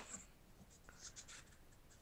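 Near silence with a few faint scratchy rustles, from a box being lifted down from a shelf and handled.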